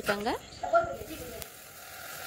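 A short spoken word, then a steady hiss from a gas stove burner running on low flame under the pan.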